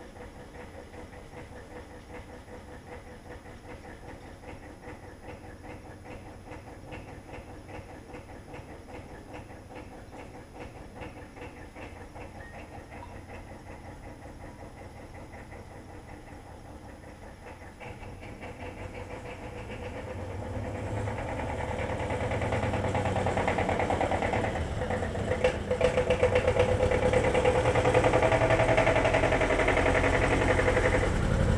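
A tractor engine running with an even beat, growing much louder from about two-thirds of the way in as the tractor drives up close. A couple of sharp knocks come near the end.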